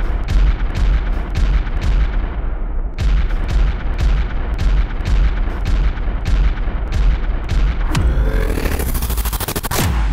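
Slowed-down sound of a see-through model Wankel rotary engine running: deep booming firing strokes about three a second over a heavy rumble. About eight seconds in, the strokes come much faster with a rising whine.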